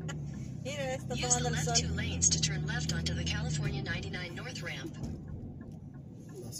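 An indistinct voice over the steady road noise inside a moving car's cabin; the voice stops a little before two-thirds of the way through and only the road noise remains.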